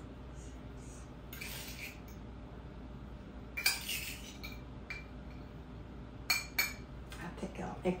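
Metal tablespoon scooping sugar from a small metal cup and tipping it into a glass bowl: a few sharp clinks of metal on metal, with short scraping sounds.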